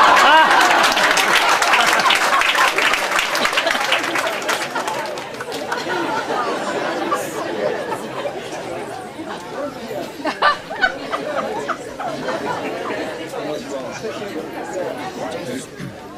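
An audience laughing and chattering, loudest at the start, then dying down into a murmur of many voices talking over one another.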